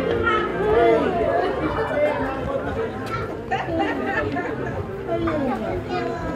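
Several people's voices chatting at once, indistinct overlapping conversation.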